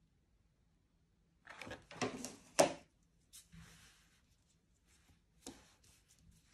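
Small earring parts being handled and set down on a tabletop: a short cluster of rustles and knocks between about one and a half and three seconds in, the loudest a sharp tap, then a few faint scrapes.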